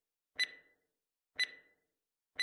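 Two sharp ticks a second apart, each with a brief ringing tone, like a clock or timer ticking sound effect.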